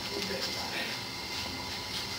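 Faint background voices over a steady high-pitched hiss, with no distinct event.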